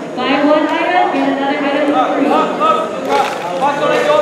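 Voices talking and calling out, several overlapping at times, with a short sharp noise a little past three seconds in.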